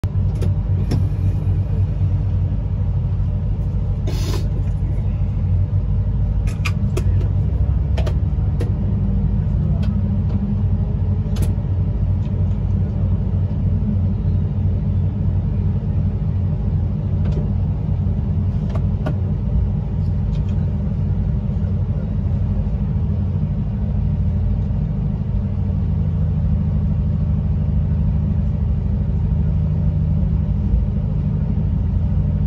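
Electric train heard from inside the driver's cab: a steady low rumble and hum, with scattered sharp clicks and knocks.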